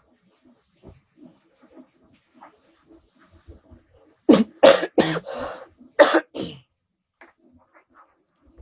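A person coughing: a quick run of several loud coughs lasting about two seconds, starting about four seconds in.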